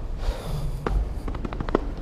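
Quiet room tone of a large hall with a few light clicks and a soft low knock, the sound of items being handled on a table.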